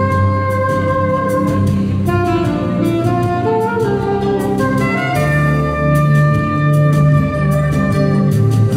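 Saxophone playing a slow melody of long held notes live over a backing track with bass and a steady drum beat.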